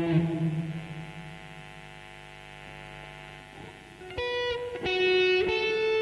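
Electric guitar playing a slow ballad melody: a held note rings and fades away over about four seconds, then new single notes are picked about four seconds in.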